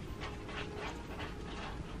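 A dog panting quietly, about four quick breaths a second.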